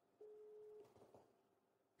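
Faint ringback tone of an outgoing smartphone call: one short, steady beep, followed by a couple of very faint ticks.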